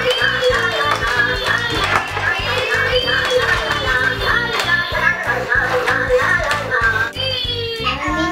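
Dancing Laa Laa Teletubby toy playing its tune: music with a steady beat and a gliding melody, cut off above the middle of the treble.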